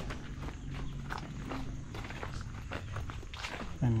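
Footsteps walking on a dirt and gravel path, irregular steps about two a second.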